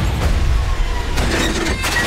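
Loud, continuous explosion and crashing-debris sound effect with a deep rumble underneath.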